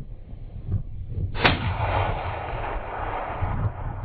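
A single hunting rifle shot about a second and a half in, its report rolling away over about two seconds.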